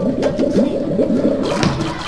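Water gurgling and sloshing as a plastic bucket is dipped into a tub of water and lifted out, a quick run of glugs several a second that stops just before the end.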